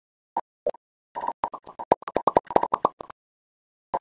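Cartoon-style popping sound effect over an intro logo card. Two single pops come first, then a quick run of many short pitched pops, stopping about three seconds in.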